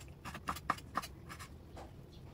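A kitchen knife chopping Chinese sausage into small cubes on a bamboo cutting board: a quick run of light, faint knife taps on the board, about four a second, thinning out near the end.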